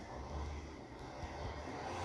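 Quiet room tone between words: a low steady hum with a faint hiss.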